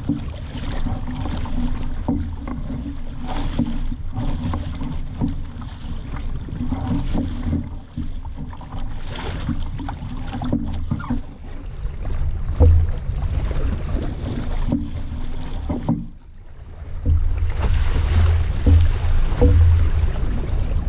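Wind buffeting a boom-mounted camera's microphone as a small sailing dinghy moves under way, with water washing along the hull. The rush drops briefly near the end, then comes back stronger.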